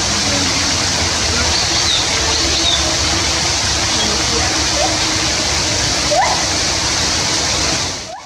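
Steady rushing noise like running water, with faint voices of people in the background.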